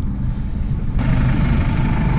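Wind rumbling on the microphone. About a second in, the steady running of a Massey Ferguson tractor's engine at idle comes in.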